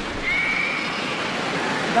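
A karateka's high-pitched kiai shout, one shrill cry lasting under a second and falling slightly at the end, over the steady noise of an arena crowd.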